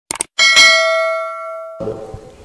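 Subscribe-button animation sound effect: a quick double click on the notification bell, then a single bright bell ding that rings out and fades over about a second and a half.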